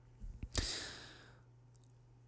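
A man sighing into a close microphone: one long, breathy exhale that starts suddenly about half a second in and fades out over about a second.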